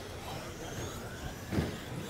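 Electric motors of RC stock trucks (Traxxas Slash) whining as they race, the pitch rising and falling with throttle, with a low thump about one and a half seconds in.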